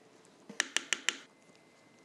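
Four sharp taps in quick succession about half a second in: a spatula knocked against the pan, shaking the last of the pumpkin cheesecake batter off into the springform pan.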